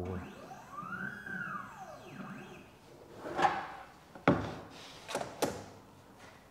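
Electric drive of a Blum EASYSTICK electronic ruler running its stop to a set position, a whine that rises and then falls in pitch over about two seconds. A scuff and a few sharp knocks follow in the second half.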